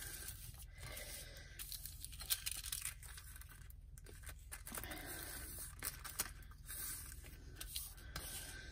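Stiff cardstock being handled and slid across a cutting mat: faint rustling and light scraping of paper on the mat, with a few small clicks and taps.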